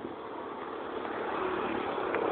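Steady road noise of a vehicle going by, growing gradually louder.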